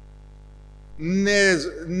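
Steady electrical mains hum, then a man's voice over a microphone starting again about a second in.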